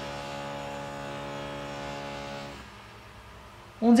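A small motor running with a steady, even pitch for about two and a half seconds, then stopping.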